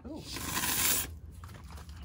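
A can of Great Stuff expanding spray foam sputtering out a short burst of foam, lasting about a second, then trailing off into faint crackle.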